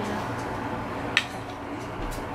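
Steady hum of a window air conditioner filling the room, with one short sharp click a little over a second in.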